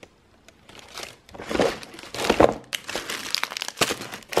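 Tissue paper crinkling and rustling as hands fold it back in a gift box, in a few bursts after a quiet first second, with some sharp crackles near the end.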